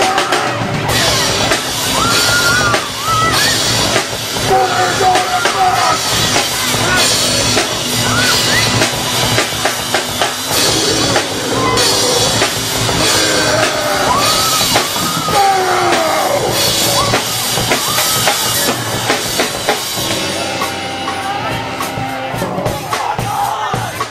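Live rock band playing an instrumental passage: drum kit and cymbals keep a steady beat under a wavering melody line. Near the end the drums thin out, leaving held notes.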